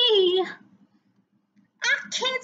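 A woman singing unaccompanied holds the last note of a line, which wavers and slides down in pitch before breaking off about half a second in. After a short pause she starts singing again near the end.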